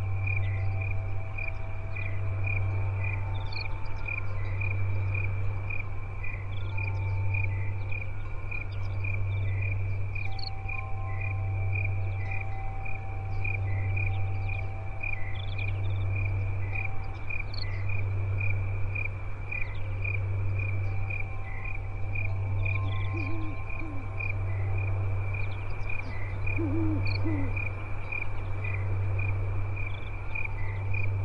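Crickets chirping in a steady, evenly spaced rhythm over a low hum that swells and fades about every two seconds. Soft held tones at several pitches come and go, and faint short bird calls are scattered above.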